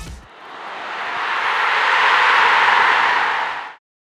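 Backing music cuts out, then a whoosh sound effect, a hiss of noise, swells over about two seconds and cuts off abruptly near the end.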